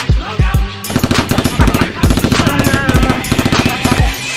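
Rapid automatic-gunfire sound effects over background music with a heavy bass beat; the rapid fire starts about a second in and carries on as a dense rattle.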